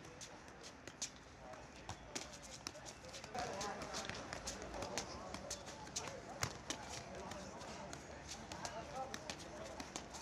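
A football struck again and again by feet during freestyle juggling: irregular sharp taps, a couple or more a second, some louder than others. Voices talk in the background, mostly from about three seconds in.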